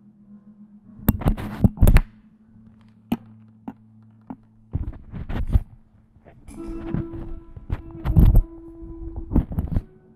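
Amplified electric guitar: low notes held and sustained underneath, broken by clusters of sharp percussive strikes on the strings, the loudest about two seconds in and about eight seconds in.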